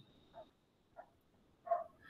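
A dog barking faintly: about three short barks spaced roughly half a second apart, the last and loudest near the end.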